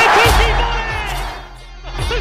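Music from a football highlight video, with a commentator's excited shouted call over it in the first second; the sound dips in level just past halfway and picks up again at the end.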